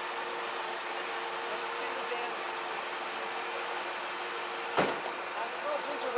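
1993 Cadillac Fleetwood lowrider idling steadily, a low hum with a hiss. A single sharp knock comes about five seconds in.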